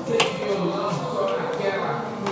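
A single sharp click a moment in, followed by faint voices in the background.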